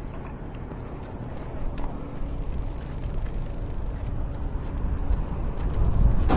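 Horse's hooves clip-clopping on asphalt as it is led at a walk, as scattered faint knocks over a steady low rumble.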